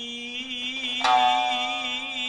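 Kiyomoto accompaniment to a Japanese dance: a singer holds one long note with a slow, wide vibrato, and a shamisen string is plucked sharply about a second in and rings away.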